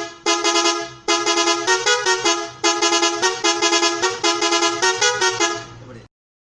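Bajaj RE auto rickshaw's musical horn playing a quick stepping tune, several short phrases in a row with brief gaps between them, cutting off suddenly at the end.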